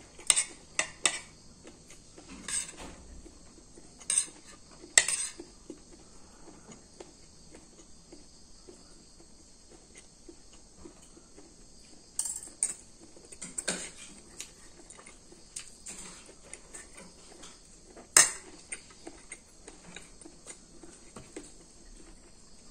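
Metal spoon and fork clinking and scraping against a plate while scooping up corn kernels: scattered sharp clinks, a few in the first five seconds, a cluster about twelve to fourteen seconds in, and the loudest single clink about eighteen seconds in.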